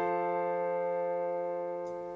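Background music: a held keyboard chord slowly fading away.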